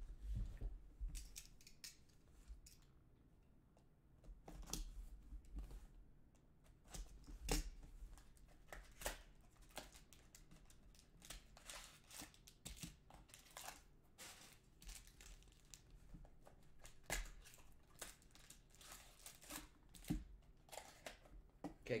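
A Panini Mosaic trading-card hobby box being torn open by hand: a faint run of short cardboard rips and packaging crinkles. The crackling comes thickest in the second half as the packs are pulled out.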